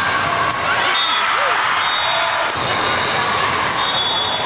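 Volleyball rally in a large, busy hall: a few sharp ball hits over the steady hum of many voices, with short high squeaks of court shoes.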